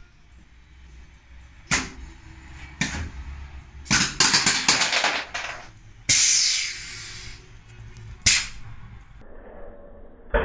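Pneumatic actuators and blade cutters of an automated runner-cutting station firing on a plastic front grille. There are sharp snaps about two and three seconds in, a quick run of snaps around four to five seconds, a hiss of released air for over a second at about six seconds, and a last snap a little past eight.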